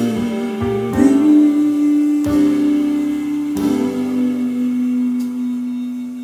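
Closing bars of a jazz ballad for female voice and piano: the singer holds long wordless notes, wavering at first, over piano chords struck every second or so, the last note and chord starting to die away near the end.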